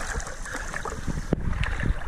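Pool water sloshing and splashing close to the microphone as two huskies paddle, over a low steady rumble, with a sharp tick about a second and a half in.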